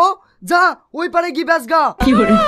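Speech only: a young man's voice talking in short phrases.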